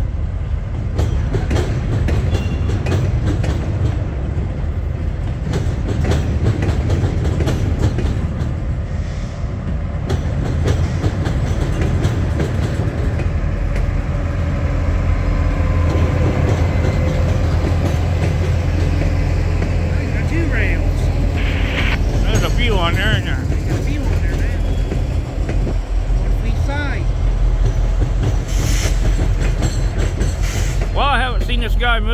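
CSX rail train's freight cars and rail-handling flatcars rolling slowly past at close range while backing onto a siding: a steady low rumble with clicking of wheels over the rail joints.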